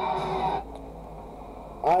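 Wrestling broadcast audio with a man's voice cuts off suddenly about half a second in, leaving only a faint low hum; a man starts talking near the end.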